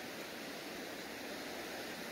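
Steady, even hiss of background noise with no distinct sounds in it.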